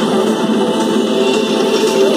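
Loud electronic house music played over a concert sound system, heard from among the crowd.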